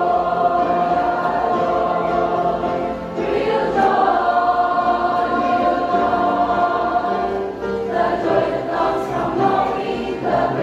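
Large mixed church choir singing a gospel song in parts, with long held notes in the middle and shorter, more clipped phrases near the end.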